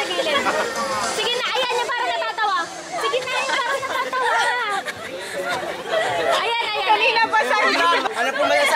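Voices of several people talking over one another in a group; only speech, with no other clear sound.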